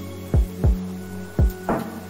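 Background music: sustained chords over a slow beat of deep, thudding drum hits, with a sharper snare-like hit near the end.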